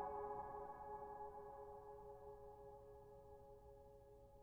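A held solo piano chord slowly dying away toward near silence, no new notes struck.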